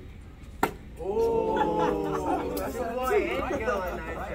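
A single sharp smack about half a second in, then several young men's voices calling out and exclaiming together for most of the rest.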